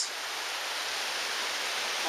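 Steady rushing of Bright Angel Creek's flowing water.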